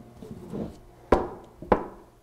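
A coated steel battery hold-down frame being flipped over and set down on a tabletop: soft handling rustle, then two sharp knocks about half a second apart as it lands.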